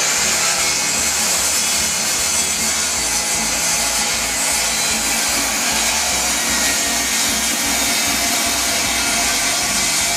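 Power chop saw blade cutting steadily into a block of aspen burl. The burl is too large for the saw, so this is a partial cut that the saw cannot take all the way through.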